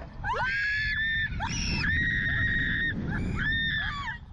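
Riders on a slingshot catapult ride screaming as they are flung upward: about four long, high-pitched screams in a row, over a low rush of wind on the ride-mounted microphone.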